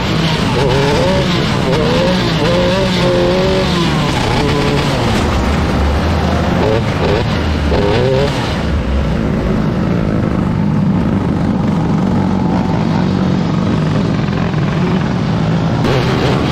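Onboard sound of a 125cc micro sprint car engine at racing speed, its pitch rising and falling with the throttle. After about eight seconds it drops to a steadier, lower running note as the car slows.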